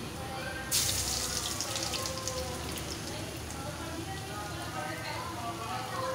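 A besan-battered potato tikki dropped into hot oil in a frying pan: a sudden loud sizzle less than a second in, dying down over the next second or two into steady frying.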